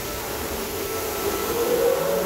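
Steady rumbling noise of a moving theme-park ride boat and its surroundings, with a faint hum that rises a little near the end.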